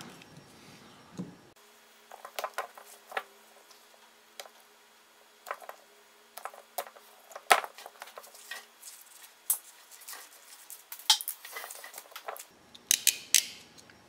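Utility knife slitting the outer jacket of a heavy four-conductor electrical cable, played back sped up: a quick, irregular run of sharp clicks and scrapes from the blade.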